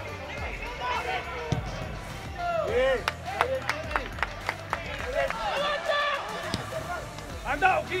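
Footballers' voices calling and shouting on the pitch over background music, with a quick run of sharp knocks in the middle.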